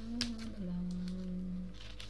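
A woman humming a few long, held notes, the pitch stepping once, with a small click about a quarter second in from the palette packaging she is opening.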